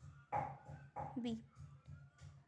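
A dog barking twice in the background, about a third of a second in and again about a second in, the second call falling in pitch, over a low hum.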